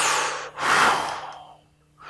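A man's breath through the mouth as he mimes a drag on a cigarette: a short, sharp draw followed by a longer puffed-out breath that fades away.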